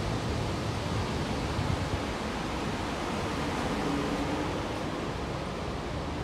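Steady noise inside an Alstom Metropolis driverless metro carriage, an even rumble and hiss with no sharp events.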